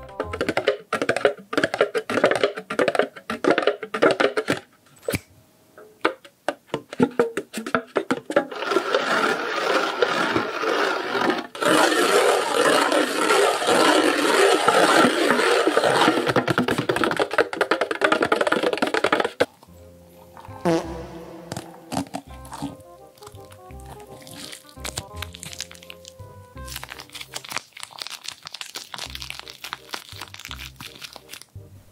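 Music with close-miked ASMR handling sounds: fingers tapping and rubbing on the lids of cup-noodle containers. The dense rustling is loudest in the middle and cuts off abruptly about two-thirds of the way through.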